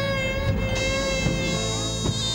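Rababa, the Egyptian bowed spike fiddle, playing a folk melody: one long nasal note held and then wavering and sliding in pitch about halfway through.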